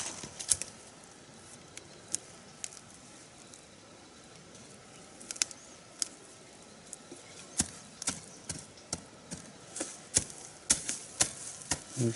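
Scattered sharp knocks and scrapes of a digging tool striking dry soil and roots while unearthing cassava, the strikes irregular and growing more frequent in the second half.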